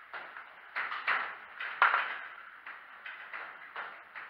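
Footsteps on a gritty, debris-strewn floor: about six short, uneven steps.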